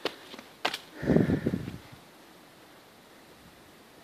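Two short clicks, then a brief low scuffing rustle about a second in, from the handheld camera being handled or from a step on rocky ground. After that only faint outdoor background remains.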